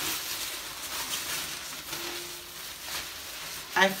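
Thin plastic tablecloth rustling and crinkling steadily as it is handled and spread out.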